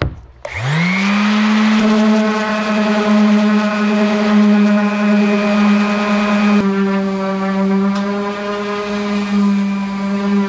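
Corded random orbital palm sander switched on, its motor spinning up in about half a second to a steady whine with several overtones, then running steadily as it scuffs the paint on a truck cap shell.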